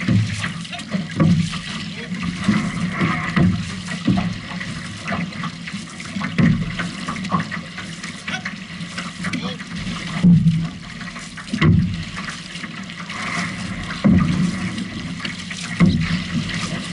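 Water splashing and rushing along an outrigger canoe's hull and float while the crew paddles, with uneven louder surges every second or two as the paddles pull through the water.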